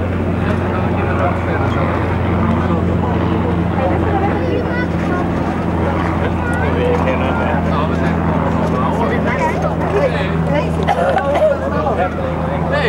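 Indistinct voices of people talking nearby, over a steady low hum.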